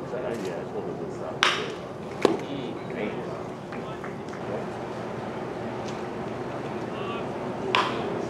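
A pitched baseball popping into the catcher's mitt, a single sharp smack about two seconds in, just after a brief hiss-like burst. Players' voices chatter throughout, and another hiss-like burst comes near the end.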